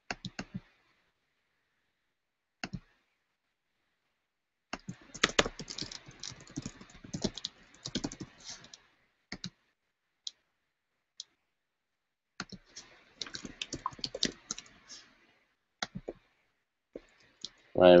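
Typing on a computer keyboard: two runs of rapid keystrokes with a few single key or mouse clicks scattered between them.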